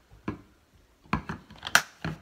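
A few short clicks and taps, the sharpest near the end: small handling noises while sauce is being put on again.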